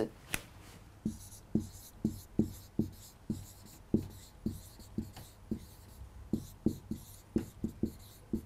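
Marker pen writing on a whiteboard: a run of short strokes, about two or three a second.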